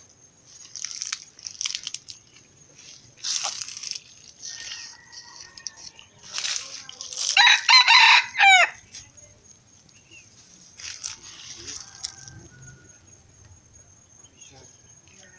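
A red junglefowl rooster crows once, a short crow of about a second and a half that ends in a quick rising-and-falling flourish. Scattered brief rustling noises come before and after it.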